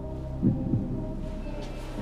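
Quiet background music bed: a low, throbbing bass pulse like a heartbeat over a steady hum.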